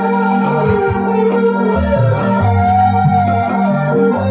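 Live dangdut band playing an instrumental passage without vocals: electric guitars and electronic keyboard carry a sustained, bending melody over a steady bass line.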